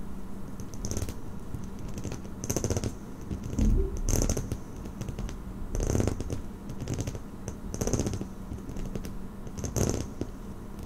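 Irregular soft clicking and tapping in small clusters, roughly once a second.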